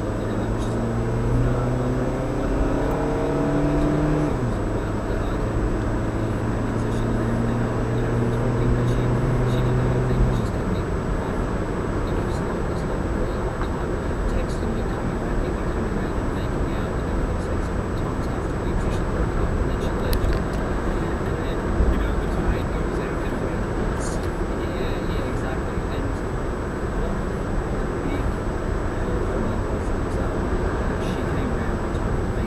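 Car accelerating, heard from inside the cabin. The engine note rises, drops back about four seconds in as it shifts up, and climbs again until about ten seconds in. After that only a steady tyre and road noise is left at cruising speed.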